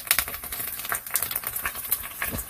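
Starch toothpicks frying in hot oil in a small pan: fast, irregular crackling and popping of the oil.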